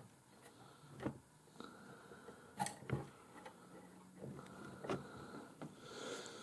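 Faint, scattered clicks and taps of a metal tape measure being handled against a model railroad flat car, the clearest about a second in and around three seconds in.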